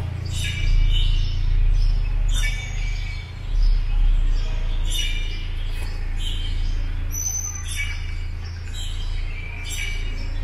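Small birds chirping inside a stone building, short high calls repeating roughly every second, over a steady low rumble.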